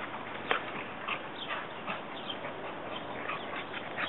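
Two beagles play-wrestling on grass, giving a scatter of faint, short dog sounds and scuffles.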